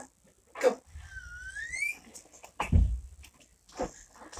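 A pet dog whining, with one drawn-out whimper about a second in that dips and then rises in pitch, among short snuffling noises and a dull thump just before three seconds.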